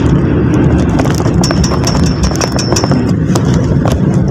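Engine and road noise of a passenger jeepney, heard from inside its crowded rear cab: a steady low rumble with scattered rattles and knocks. A thin, high, pulsing tone runs for about a second and a half in the middle.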